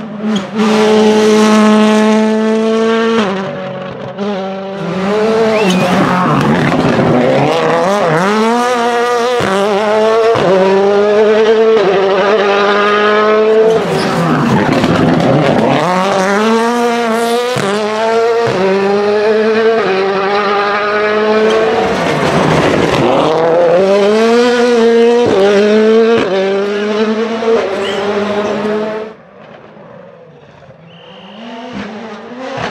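Ford Fiesta WRC rally car's turbocharged four-cylinder engine at full attack over several passes. It revs up through the gears, and the pitch drops sharply at each shift or lift, again and again. Near the end the sound cuts off suddenly.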